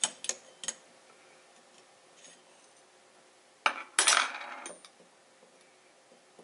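Metal tool clicking and scraping against metal parts inside a Sigma 500mm f4.5 lens barrel while working an internal retaining ring loose: a few light clicks at the start, then a louder metallic clatter and scrape about four seconds in.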